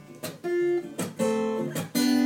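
Acoustic guitar strummed in a steady rhythm, its chords ringing between the strokes.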